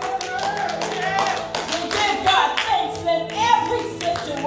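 A woman singing into a microphone over a held keyboard accompaniment, with hand clapping keeping time.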